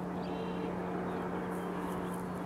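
A steady low hum over faint outdoor background noise, with no clear event standing out.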